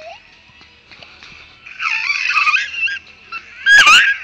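A toddler's high-pitched vocal squeals while swinging: one wavering squeal about halfway through, then a louder, shorter rising squeal near the end.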